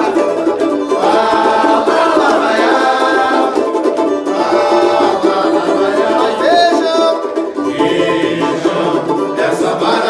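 Samba sung by several voices together, accompanied by two banjo-cavaquinhos strummed in a steady rhythm.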